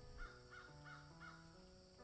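Faint background music of sustained held notes, with a quick run of four or five faint crow caws in the first second.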